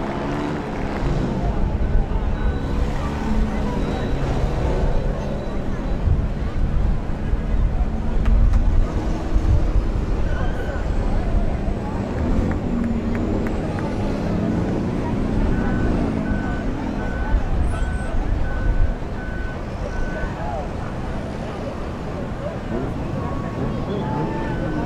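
Race car engines running at idle, a low rumble, with voices around. Partway through comes a short high beeping, about two beeps a second, for a few seconds.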